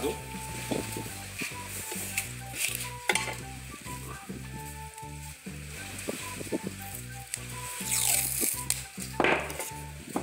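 Soft background music with slow low notes, over paper and scissors being handled on a board. Near the end, masking tape is pulled off its roll with a crackling hiss.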